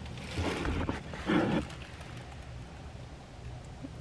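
Faint handling and rustling as a handheld camera is moved, with one brief low murmur about a second and a half in, over a low steady background hum.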